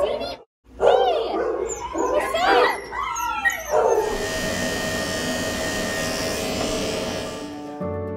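A small dog whining and yelping in short cries that rise and fall in pitch. About halfway through, electric grooming clippers start a steady buzz as they shave its heavily matted coat, stopping just before the end. Soft music plays underneath.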